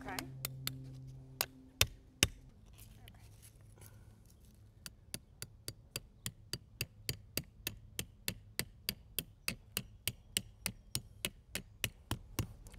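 Hammer blows driving metal spikes through plastic no-dig landscape edging into the ground. A few scattered strikes come first, then from about five seconds in a steady run of about three blows a second.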